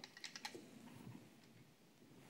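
Near silence, with a few faint clicks in the first half-second as a small diecast model car is handled and turned over in the fingers.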